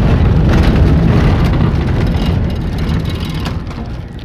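Car driving slowly over a cobblestone street, heard from inside the cabin: a steady low rumble of engine and tyres with small irregular knocks from the stones, easing off near the end as the car slows.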